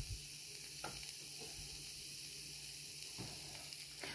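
Faint, steady sizzling of chicken, penne and vegetables in sauce in a speckled nonstick frying pan turned down to low heat.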